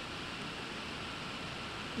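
Steady, even hiss of background noise: room tone and microphone hiss, with no distinct event.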